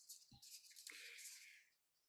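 Near silence: room tone, with a couple of faint brief sounds.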